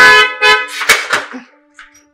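A car horn honking at the gate, a loud short blast at the start followed by a few shorter, weaker sounds. It is the signal for the gate to be opened.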